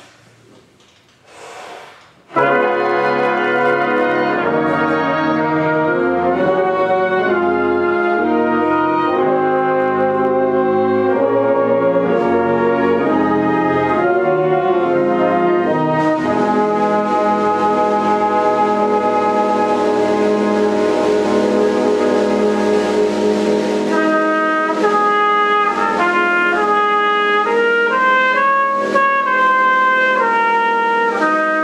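A wind band with flutes, brass and percussion comes in together about two seconds in and plays a slow passage of held chords. About halfway through, a high shimmering wash joins the band and stops several seconds later.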